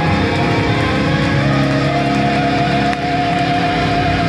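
Amplified electric guitars of a live rock band ringing out sustained chords, with a long held higher note coming in about a second and a half in.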